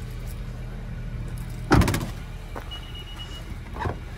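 A car's hatchback tailgate swung shut with one loud slam about two seconds in, the latch catching with a short rattle, over a steady low hum.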